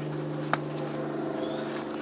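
A steady low hum runs throughout, with a single sharp click about half a second in.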